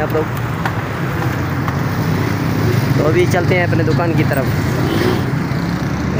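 A motorcycle running steadily while riding through street traffic, a continuous low engine hum mixed with road and wind rumble. A voice is heard briefly about halfway through.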